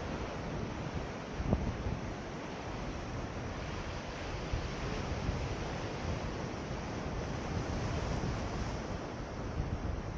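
Ocean surf washing over rocks, with wind buffeting the microphone. There is a single brief knock about a second and a half in.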